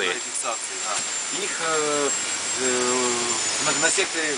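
Steady rushing, machine-like noise with a thin high whine, and a voice speaking a few drawn-out syllables in the middle.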